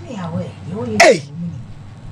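A person's voice making short non-word sounds with gliding pitch, and a brief, loud, breathy exclamation with a falling pitch about a second in.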